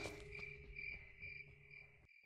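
Crickets chirping in a steady pulsing rhythm, faint, over a low steady hum; both fade out and stop near the end.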